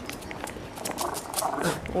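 Small white long-haired dog on a leash giving a brief growling vocalisation a little after a second in, squaring up to something it is 'fighting' with.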